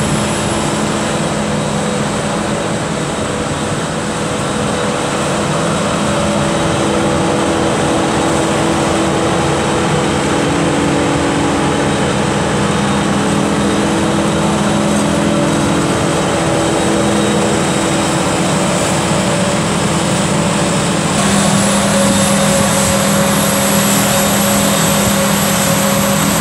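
Claas Jaguar 950 self-propelled forage harvester chopping maize under load: a steady heavy engine drone with a faint high whine over it, and a tractor running alongside. It gets a little louder near the end.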